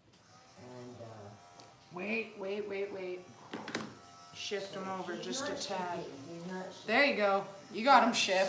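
Cordless Wahl Arco clipper with a #30 blade running with a steady buzz, edging the hair along a cocker spaniel's lip line, under talking.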